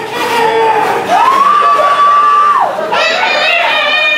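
A man imitating roosters crowing through a microphone: one long crow that rises, holds and falls about a second in, then another starting near the end.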